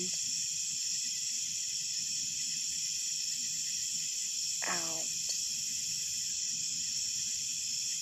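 Steady chorus of night insects shrilling in several high, even bands. About halfway through, a woman's voice briefly speaks a single falling syllable.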